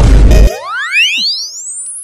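Edited-in comedy sound effect: a loud boom, then a rising whistle that sweeps up steeply in pitch over about a second and a half and fades.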